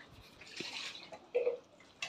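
Thin masala gravy in a metal pan, sloshing and bubbling at the boil as fried colocasia-leaf rolls are stirred in it. A brief, sharper sound comes about a second and a half in.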